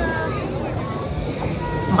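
Faint voices over a steady low rumble of outdoor noise.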